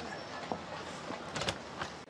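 Outdoor street background with a few scattered sharp clops, about half a second in, twice close together around a second and a half, and once more near the end.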